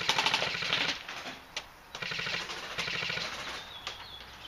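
Airsoft electric gun firing fully automatic bursts in rapid succession: a long burst at the start, then two shorter bursts from about two seconds in.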